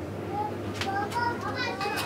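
Children's voices in the background, high-pitched calling and chatter with no clear words, over a steady low hum.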